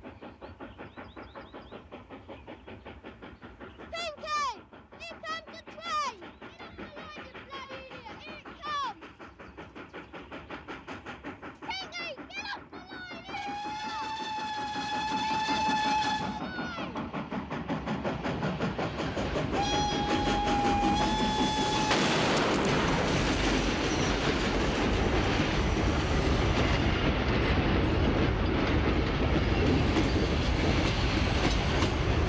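Steam locomotive approaching with a rhythmic chuffing, over children's shouts early on. Two long whistle blasts come about midway, then the train's noise swells and stays loud as it runs past on the rails.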